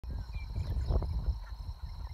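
Wind buffeting the microphone in a low, uneven rumble, with a few faint chirps of distant birds.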